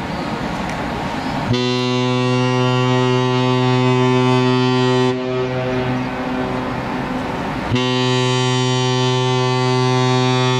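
Cruise ship's horn sounding two long, deep blasts: the first begins about a second and a half in and lasts about three and a half seconds, the second begins near eight seconds and is still sounding at the end.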